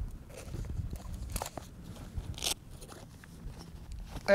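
Photographic filters and their case being handled as a circular polarizer is swapped for a square ND filter: a few short crinkly rustles and clicks, the loudest about two and a half seconds in, over a low wind rumble on the microphone.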